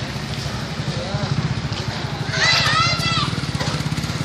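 Street ambience with children's voices. A child's high-pitched shout or call stands out about two and a half seconds in, over a steady low rumble.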